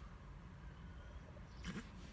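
Quiet sipping from a tumbler, with one short soft gulp or throat sound near the end, over a low steady rumble.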